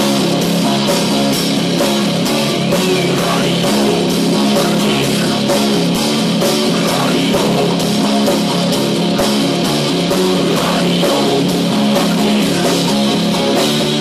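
Live metal band playing loudly: distorted electric guitars and a drum kit with a steady, driving beat.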